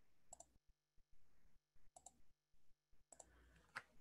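Near silence, broken by about four faint clicks of a computer mouse; the last one, near the end, is the sharpest.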